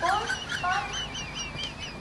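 Rapid high-pitched bird chirping, about five short chirps a second, with a brief rising call at the start.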